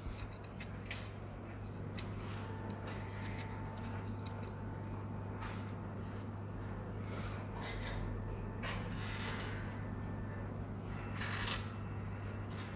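Small clicks and light metallic handling of a folding triplet eye loupe and its little battery-compartment key, over a steady low hum. A louder tap near the end as the small metal key is set down on the table.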